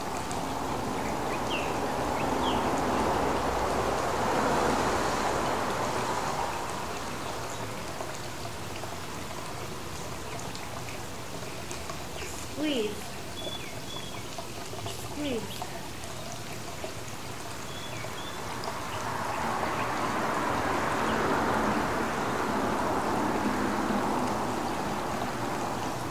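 A steady rushing noise that swells louder twice, with a few brief faint chirps in the middle.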